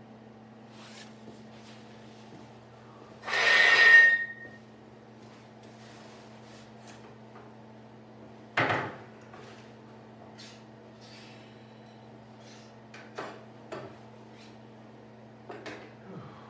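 A long 3/4-inch steel bar being handled at a workbench: about three seconds in, a second-long metallic scrape with a ringing tone, a sharp clank about five seconds later, then a few lighter knocks near the end. A steady low hum runs underneath.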